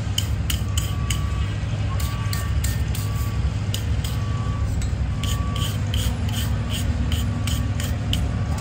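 A hand wire brush scrubbing scale off a forged iron leaf held on an anvil, in quick scratchy strokes that come in bursts and run about three a second in the second half. A steady low rumble sits underneath.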